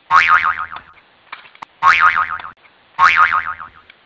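Cartoon spring "boing" sound effect, heard three times, each a wobbling, warbling tone about half a second long that dies away.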